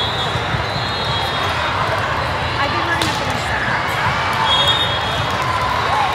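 Busy indoor volleyball hall: volleyballs being struck and bouncing on hardwood courts amid players' and spectators' voices. A sharp ball smack stands out about three seconds in, with brief high squeaks now and then.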